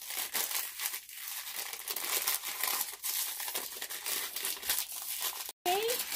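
Foil wrapper crinkling and rustling in the hands as it is peeled off a small toy figure, in an irregular run of crackles that cuts off abruptly near the end.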